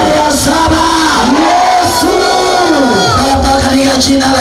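Worship music with voices singing, and a congregation calling out together in loud prayer.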